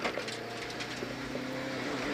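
Rally car engine held at full throttle, running at steady, nearly constant revs, heard from inside the cabin.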